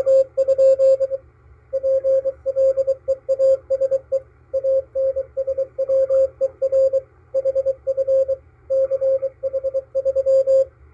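Morse code from coast station KPH, received on a Malahiteam DSP-2 SDR: a single mid-pitched tone keyed on and off in dots and dashes over faint band hiss. It is sending a station message that ends 'PLEASE ANSWER HF CH3'.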